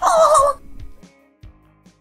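A short, high-pitched, quavering laugh, like a cackle, lasting about half a second. Faint, sparse music notes follow it.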